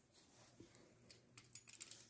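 Faint, light clicks and taps, clustered in the second second, of a metal fluted pastry wheel being handled and set down on a sheet of dough on a wooden board.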